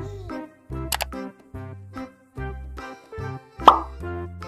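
Children's background music with a steady, repeating bass beat, with a sharp click about a second in and a loud cartoon plop sound effect near the end.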